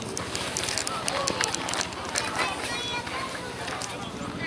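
Indistinct chatter of people talking over a steady low rumble.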